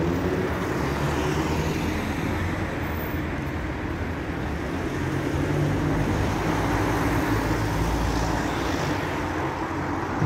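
City road traffic: vehicle engines running with a steady low hum over road noise, the low rumble growing louder about six seconds in as a vehicle passes close.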